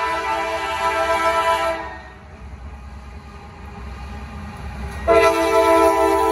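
Freight locomotive air horn sounding a steady multi-note chord, cut off about two seconds in, leaving the low rumble of the diesel and train; the horn sounds again, louder, about five seconds in as the locomotive comes alongside.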